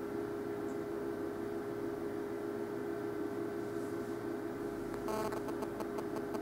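Steady electrical hum of room tone. About five seconds in, a quick run of faint clicks, thinning out to a few scattered ticks.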